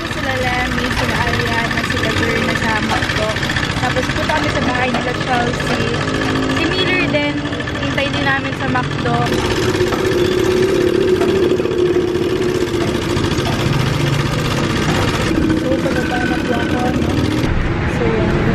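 Motorcycle engine of a tricycle (motorcycle with sidecar) running while riding, noisy, with its note steadier and stronger from about the middle on; voices talk over it.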